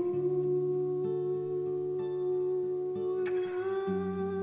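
A long, steady hummed note held over fingerpicked acoustic guitar, whose lower notes change a few times beneath it. A light click of a string is heard about three seconds in.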